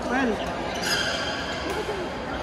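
Badminton play in a busy hall: a sharp racket hit on the shuttlecock about a second in, followed by a short high squeak, and another hit near the end. A brief shout comes at the start, over steady crowd chatter.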